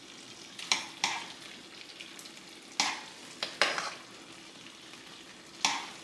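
A spoon scraping and knocking against a skillet about half a dozen times while gravy is spooned over meat, over a faint steady sizzle of the gravy simmering in the pan.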